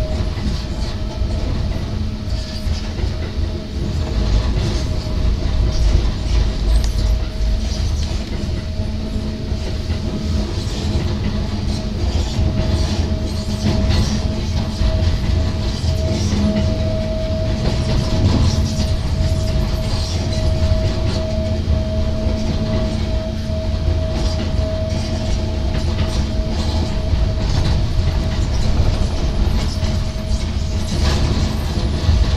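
Hakone Tozan Railway electric train running along the track, heard from inside the front cab: a steady low rumble and rattle of wheels on rails with light clicking, and a steady whine that grows stronger about halfway through and fades again near the end.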